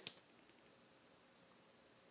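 Near silence, with two faint soft ticks just at the start and one more about a second and a half in, from tarot cards being handled and shifted.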